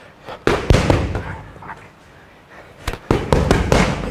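Boxing gloves slapping into leather focus mitts during pad work: two sharp punches about half a second in, then a quick run of several more near the end.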